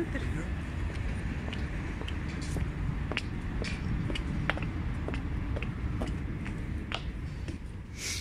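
Steady low rumble of idling buses in a bus station yard, with scattered light clicks and knocks of footsteps as someone walks between the buses and steps aboard. The rumble falls away near the end, once inside the bus.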